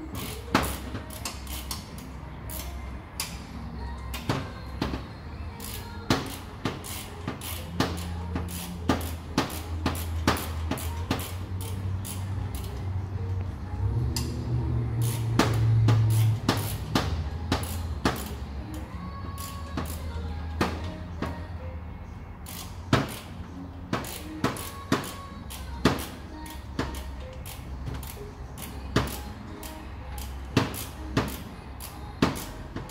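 Hand tools and metal parts clinking in irregular sharp clicks and taps as bolts are worked with a spanner, over a low steady hum.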